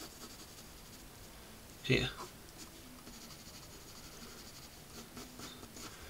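Pencil shading on paper: a faint, steady scratching of the lead in small strokes as the propeller spinner is shaded in.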